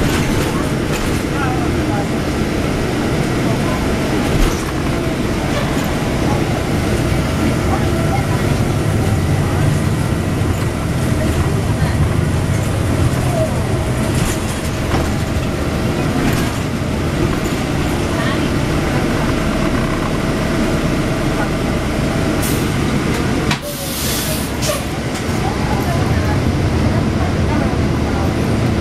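Cabin noise inside a 2009 NABI 416.15 (40-SFW) transit bus under way: a steady engine and road rumble with a faint steady whine. A short hiss comes about three-quarters of the way through.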